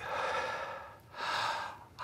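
A man with a stammer taking two long, audible breaths through his open mouth just before he speaks.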